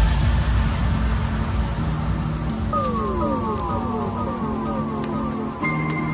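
Electronic background music. It opens with a deep downward swoop into a steady low bass, and from about three seconds in a run of repeated falling synth glides plays over it.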